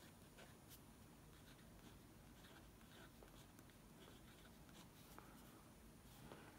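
Faint scratching of a ballpoint-style pen writing on planner paper, with small scattered ticks as the strokes are made.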